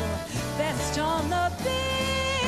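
A woman singing a ballad into a handheld microphone over a live band accompaniment. She sings a few short phrases, then holds a long note near the end.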